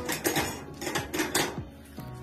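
Metal pan-support grates of a gas stove clanking and rattling against the stainless-steel hob top as they are handled and set in place, a quick series of about seven or eight metallic strikes with short ringing.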